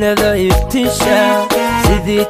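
Live Somali pop music played loud through a PA. A pitched melody, keyboard-like, runs over deep drum beats that fall about every second and a half.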